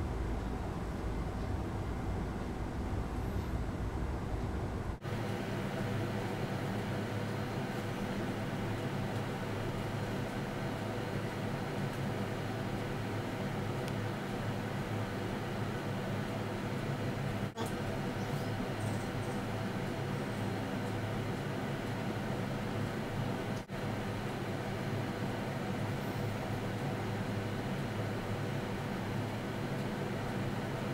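Steady mechanical hum with a hiss over it, broken by three very brief dropouts; the low rumble thins out about five seconds in.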